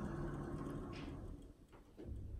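Quiet indoor room tone: a low steady hum, with one faint brief sound about a second in.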